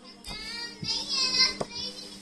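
Faint high-pitched singing in the background, its pitch wavering for about a second and a half, with a few soft clicks.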